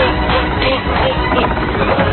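Film score music with a steady percussive beat, mixed with the action sound effects of an animated chase.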